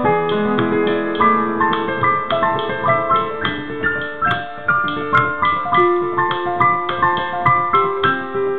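Kurzweil digital piano played by hand: a melody of single notes over held chords, the notes following one another steadily and ringing on as they fade.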